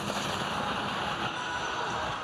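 Ski-jumping skis gliding over the snow of the landing slope and outrun just after touchdown: a steady hiss.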